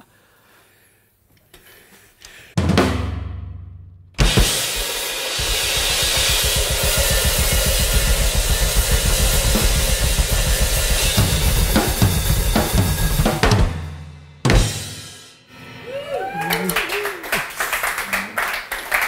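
Two drum kits played together. A single hit rings out, then comes a long loud stretch of rapid drum and bass drum strokes under crashing cymbals. It stops, a second big hit rings out, and lighter drumming follows near the end.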